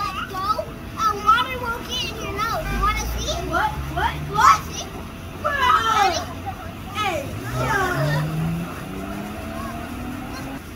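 Children shouting and squealing while playing on an inflatable water slide, with a low hum rising in pitch through the second half.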